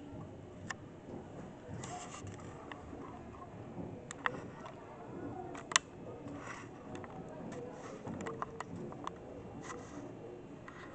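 Faint distant voices from the field and stands, with scattered sharp clicks and knocks, the loudest about four seconds in and just before six seconds.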